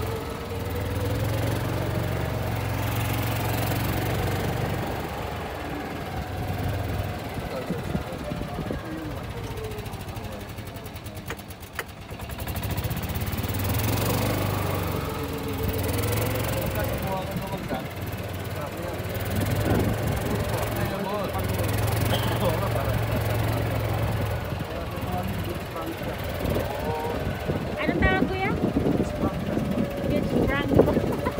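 Indistinct voices over a low, steady rumble that comes and goes.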